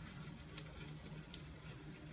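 Two faint, sharp snaps about three-quarters of a second apart over a low hum. They are small sparks jumping from a hand-cranked Van de Graaff generator's dome to a nearby discharge wand as charge first begins to build, heard before any arc is visible.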